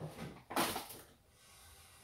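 A single sharp clack about half a second in, as something is set down or shut in a kitchen, followed by faint room noise.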